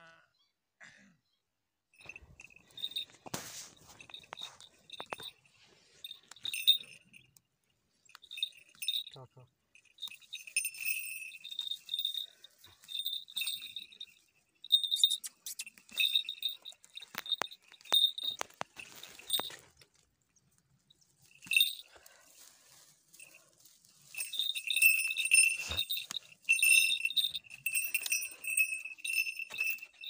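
Small metal bells jingling in short, irregular shakes, with a few sharp clicks among them.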